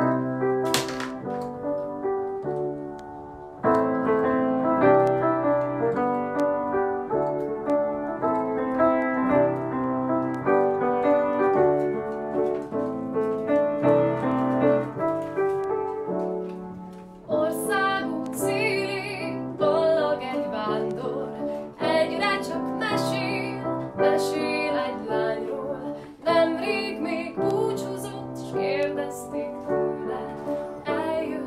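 A grand piano plays a slow, chordal song introduction. About halfway through, a woman's voice begins singing the melody over the piano accompaniment.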